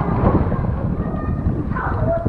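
Pool water lapping and sloshing against an action camera held at the waterline, heard as a steady low rumble while a child dives into the pool with a splash.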